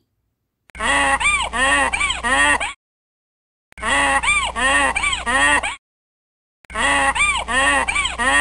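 A donkey braying: the same short bray of about four rising-and-falling notes is played three times, each time about two seconds long, with a silent gap of about a second between.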